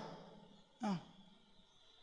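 A man's voice through a handheld microphone: one short vocal sound, falling in pitch, about a second in, between stretches of quiet.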